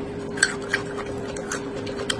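Close-miked mouth chewing of a crunchy raw vegetable, with a few sharp crunches, over a steady low hum.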